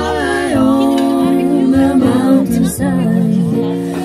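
Live acoustic trio: female voices singing together in long held notes over acoustic guitar and upright double bass.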